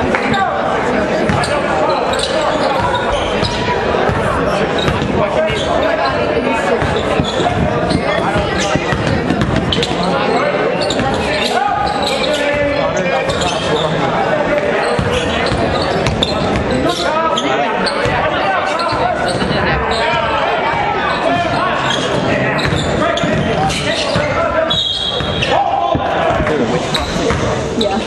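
Basketball game in a gymnasium: the ball bouncing on the hardwood court under steady talk and shouts from spectators and players, all echoing in the hall. A short, high whistle blast sounds about 25 seconds in, typical of a referee stopping play for a foul before free throws.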